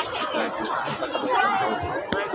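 Chatter of several people talking at once.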